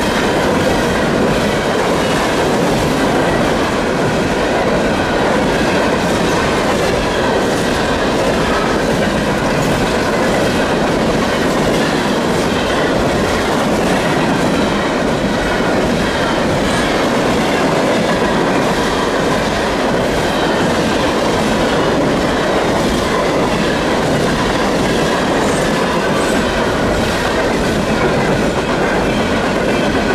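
Norfolk Southern freight train of bathtub gondola cars rolling past at close range: a loud, steady rush of steel wheels on rail with scattered clicks.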